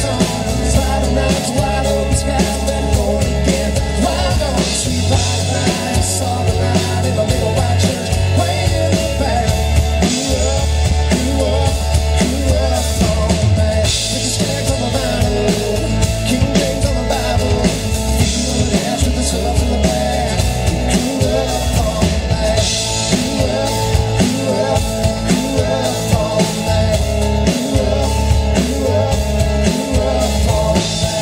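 Live country band playing with acoustic guitar, mandolin, drum kit and bass, and vocals, all steady and loud throughout.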